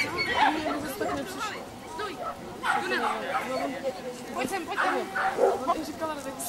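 Dachshund barking several times as it runs an agility course, with people's voices in the background.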